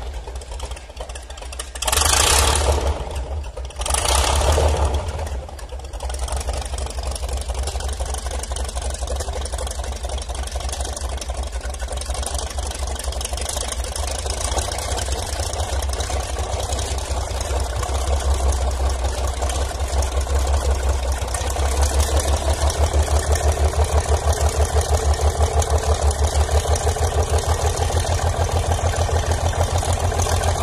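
Rolls-Royce Phantom III 7.3-litre overhead-valve V12 engine just after starting, with a few loud bursts in the first five seconds as it catches, then running steadily at idle. Over the last several seconds its note takes on a regular, rhythmic pulse.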